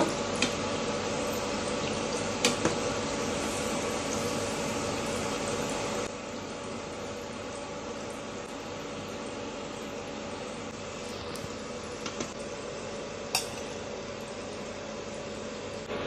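Bread-and-onion fritters deep-frying in hot sunflower oil: a steady sizzle that drops in level about six seconds in. A few sharp clicks of the metal slotted spoon against the pan.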